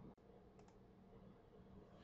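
Near silence: room tone with a faint low hum and a couple of faint clicks a little after half a second in.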